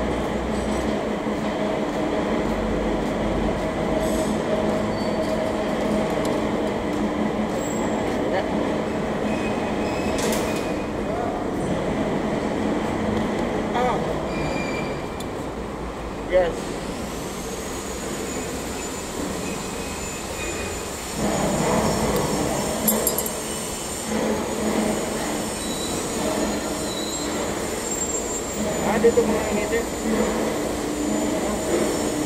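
Isuzu 3AD1 three-cylinder diesel engine running steadily. A sharp click comes a little past halfway, and the running gets louder and rougher in the last third.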